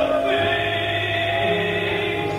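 Gospel singing: voices holding long, slow notes over a steady low accompanying note that comes in about half a second in.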